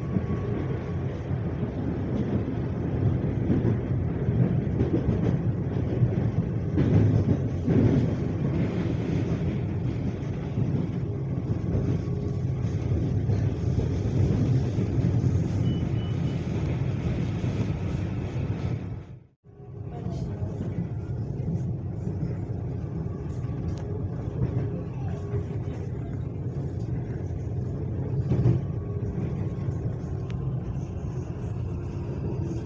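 Electric commuter train running along the track, heard from inside the carriage: a steady low rumble of wheels on rails. The sound drops out suddenly for a fraction of a second about two-thirds of the way through.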